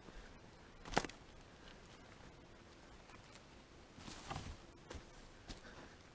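Footsteps on redwood forest-floor litter: a sharp knock about a second in, a rustling crunch around four seconds, then a few faint ticks, all over a quiet background.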